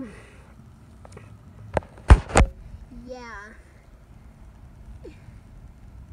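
Three sharp knocks close to the microphone about two seconds in, the middle one loudest, over a steady low rumble.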